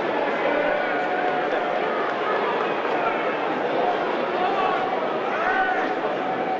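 Stadium crowd at a rugby match: a steady hubbub of many voices, with indistinct individual shouts and calls rising out of it now and then.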